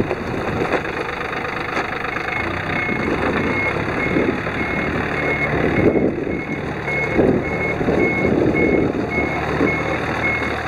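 Yanmar F215 compact tractor's small diesel engine running as it manoeuvres, with a high electronic beep starting about two seconds in and repeating about twice a second, the tractor's reverse warning beeper.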